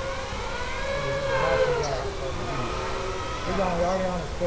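Racing mini quadcopter motors and propellers whining, their pitch rising and falling with throttle changes.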